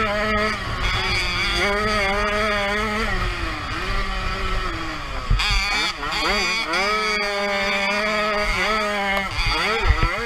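Single-cylinder 50 cc two-stroke engine of a Jawa 50 Pionýr motocross bike, heard from on board, revving hard with a constantly wavering pitch. The revs fall away twice, a few seconds in and again around the middle, then climb back up.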